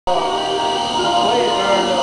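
Steady machine drone holding several constant whining tones at once, with faint voices underneath.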